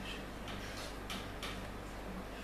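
A handful of light clicks and taps, about four in quick succession, as a wooden chair is lifted and turned in the hands, over a steady low background hum.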